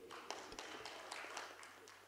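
Faint, scattered applause from an audience, heard as a thin patter of irregular claps that cuts off abruptly near the end.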